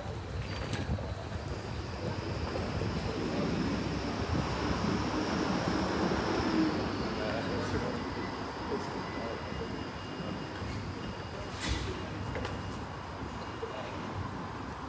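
Busy street ambience: indistinct voices of passers-by over a steady rumble of traffic, swelling a little in the middle, with a faint steady high tone through the first half.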